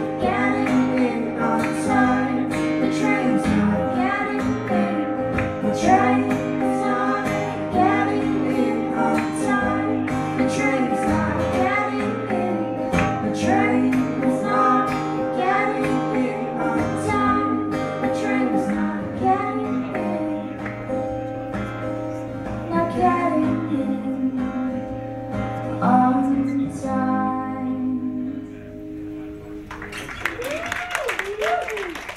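Live band music: strummed acoustic guitar and keyboard with a woman singing over them. The song winds down, dropping in level near the end.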